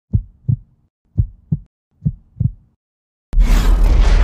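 Sound-effect heartbeat in a channel intro: three double thumps, lub-dub, about a second apart. After a short silence, a sudden loud boom with a deep rumble hits just after three seconds in and carries on as the logo appears.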